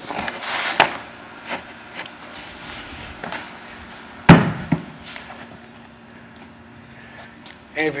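Carpet being handled: rustling as a loose carpet edge is lifted and laid back and a hand brushes across the pile, with a few small taps. A single sharp thump about four seconds in is the loudest sound.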